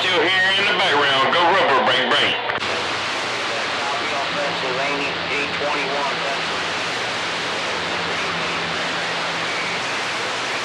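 CB radio receiver on channel 28 picking up long-distance skip: a warbling voice for about two and a half seconds, then the transmission cuts off to a steady hiss of band noise with faint voices buried in it.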